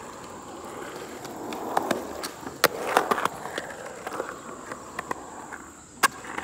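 Skateboard wheels rolling on concrete, the rumble swelling and fading as the board moves. A run of sharp clacks and ticks from the board comes through the middle, loudest about three seconds in.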